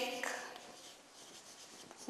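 Chalk writing on a blackboard: faint scratching of the chalk as a word is written out.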